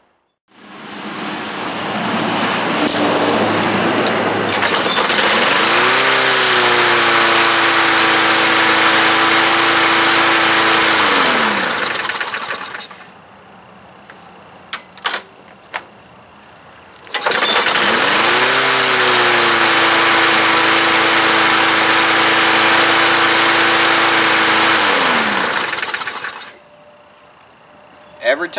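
A gas push mower's engine starts readily, speeds up to a steady run and winds down as it is shut off. After a few seconds' pause with a few clicks, it is started again, runs steadily for about eight seconds and winds down again. It now starts on the first pull, its carburetor having been cleaned of water-contaminated gas.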